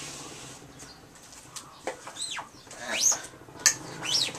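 Rubber squeegee squeaking as it is dragged across a silkscreen while white water-based base ink is laid on a T-shirt: several short, high squeaks that rise and fall in pitch in the second half, with a sharp knock shortly before the end.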